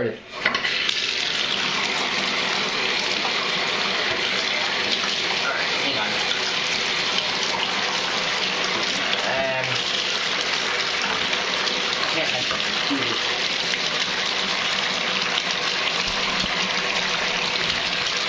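Bathtub tap turned on about half a second in, then water pouring steadily into the tub to drive a water-powered LEGO mechanism.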